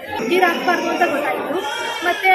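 People talking: one voice speaks, with chatter from other voices around it.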